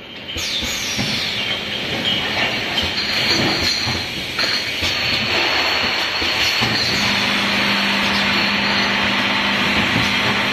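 Multi-nozzle bottle filling machine running: a steady hiss with scattered clicks and clatter as the nozzles cycle and glass bottles move along the conveyor. A low steady hum comes in about seven seconds in.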